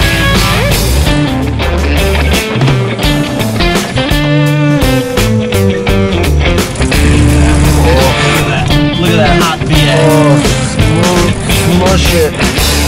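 Background rock music with a steady beat and a bass line.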